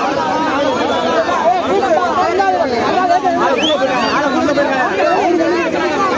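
A dense crowd of men talking over one another: a loud, unbroken babble of many voices, with no single speaker standing out.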